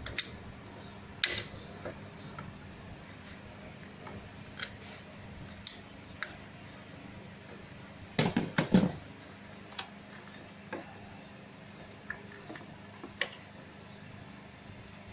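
Hand tools and engine-bay parts clicking and knocking as pliers and hands work at hoses and connectors on a BMW N63 V8, the hoses stuck fast. Scattered single clicks over a steady low hum, with a quick run of louder knocks about eight seconds in.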